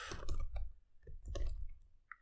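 Typing on a computer keyboard: a quick, uneven run of key clicks as a command is entered at a terminal prompt.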